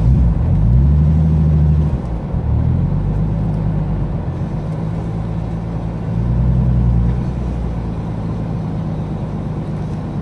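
Nissan Skyline GT-R R32's single-turbo RB26 straight-six, heard from inside the cabin, pulling the car along at low speed. The revs rise near the start and again about six seconds in, and settle back to a low idle in between.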